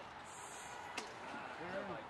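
A single sharp knock about a second in, followed by faint voices talking.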